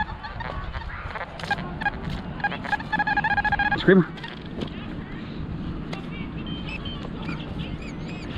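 XP Deus metal detector sounding a target signal: a nasal, rapidly warbling beep lasting about a second, a few seconds in. A short low vocal sound follows right after it.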